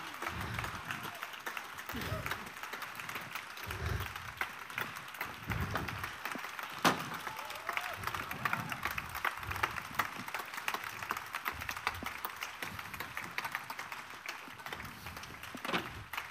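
A concert-hall audience applauding steadily, a dense patter of many hands clapping, with scattered voices in the crowd. One sharp crack stands out about seven seconds in.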